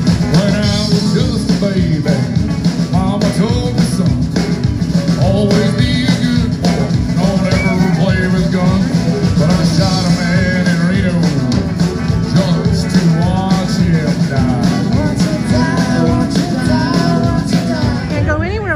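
Live country band playing amplified through a stage PA: fiddle, electric and acoustic guitars and drums, with a sung melody on top.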